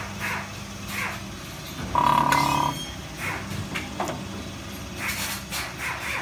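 A small automatic sachet filling and heat-sealing packing machine running through its cycle, with repeated short knocks and clicks from the sealing jaws and cutter over a low steady hum. A beep-like tone sounds once for under a second, about two seconds in.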